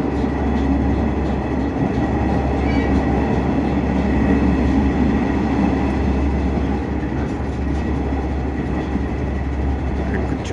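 Steady running noise inside a diesel railcar on the move: a dense low rumble of engine and wheels on rails, with a faint high whine held throughout.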